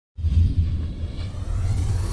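A deep rumble sound effect for an animated logo intro, starting suddenly right at the beginning.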